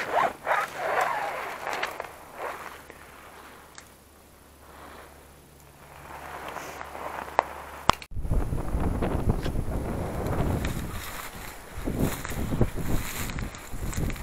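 Footsteps scraping over loose rubble and debris on a cellar floor, in several short bursts during the first two or three seconds. After a sudden cut about eight seconds in, wind rumbles on the microphone, with rustling from steps through dry brush.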